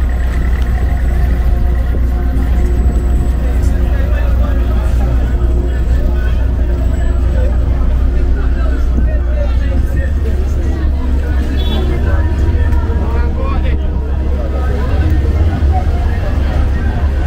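Busy town street sounds: people's voices nearby and vehicles running, over a steady deep rumble.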